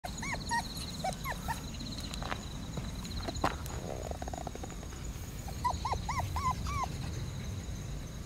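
Four-week-old Shiba Inu puppies whimpering and yipping as they play-fight, in short squeaks that rise and fall. A few come near the start and a quick run of about five comes about six seconds in.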